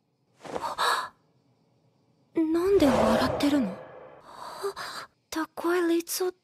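An anime character's voice: a short breathy gasp, then a long drawn-out sigh whose pitch falls. A few words of Japanese speech begin near the end.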